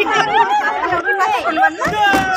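Several women talking at once in overlapping chatter.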